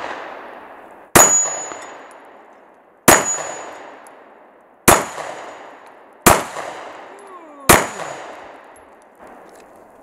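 Five shots from a Springfield Armory Hellcat 9mm pistol, spaced about one and a half to two seconds apart, each with a long echo dying away. After several shots a high ring lingers for about a second: the steel target being hit.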